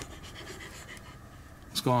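A dog panting faintly, with a man's voice starting near the end.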